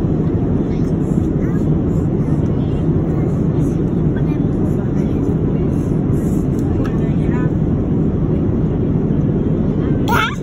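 Steady cabin noise of an airliner in flight: an even, low rush of engine and airflow noise that holds at one level throughout.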